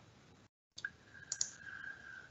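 A few faint, short clicks over low room noise, with a faint steady high tone for about a second after the first click.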